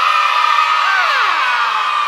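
An audience of young children shouting and cheering together in one long, high-pitched shout, with a few voices sliding down in pitch near the middle.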